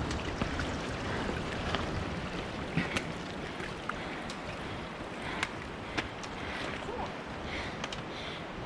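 Footsteps on wet rock and sharp clicks of trekking-pole tips striking stone, a few seconds apart, over a steady rushing noise.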